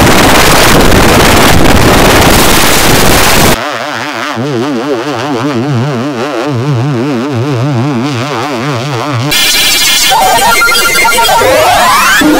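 Heavily distorted, effects-processed cartoon soundtrack: a loud, harsh wash of noise for the first three and a half seconds, then a wobbling, warbling pitched tone for about six seconds, then harsh distorted sound with sweeping rising and falling pitches near the end.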